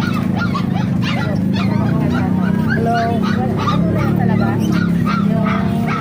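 Caged white fowl calling again and again in short, quick calls, over a steady low background rumble.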